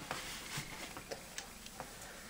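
A few faint, scattered clicks and taps of metal gun parts being handled as a Mossberg 500 shotgun's receiver and barrel are picked up and lined up for reassembly.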